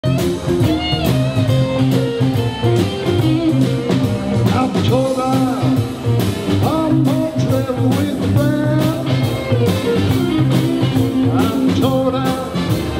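Live band playing: electric guitars and a drum kit keeping a steady beat over a bass line.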